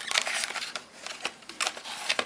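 Packaging being handled: an anti-static bag crinkling and a cardboard box and card tray rustling as a drive in its bag is lifted out, heard as a scatter of small clicks and crackles.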